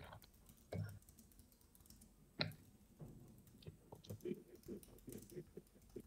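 Faint typing on a computer keyboard: a few scattered keystrokes, then a quicker run of light key clicks in the second half.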